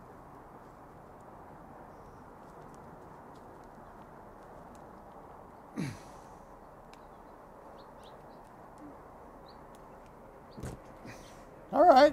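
Klein Kurve combination pliers slowly squeezing through 12/2 metal-clad armored cable: faint, over a steady low background hiss, with a brief low falling sound about halfway. Near the end comes a single sharp snap as the jaws cut through the steel armor, a cut that was a little hard to make.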